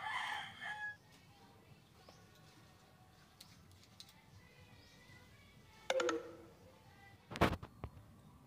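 A bird call with several stacked tones, just under a second long, at the start, and a second call falling in pitch about six seconds in. A loud knock comes shortly before the end.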